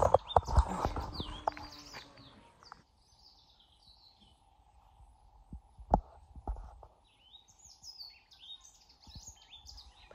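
Footsteps and camera handling noise while walking on a dirt road for the first few seconds, then a quiet stretch with small birds chirping and a faint steady high hum. A couple of sharp knocks come about six seconds in.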